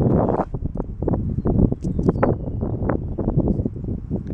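Footsteps on a dirt infield, a run of uneven thuds a few tenths of a second apart, over a steady rumble of wind on the microphone.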